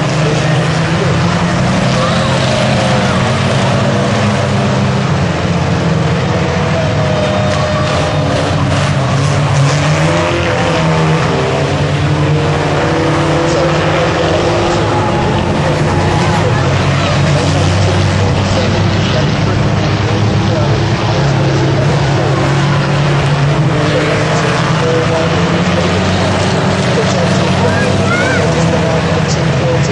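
Engines of several racing vans running hard as they lap an oval track, their pitch rising and falling as they rev and pass, mixed with crowd noise.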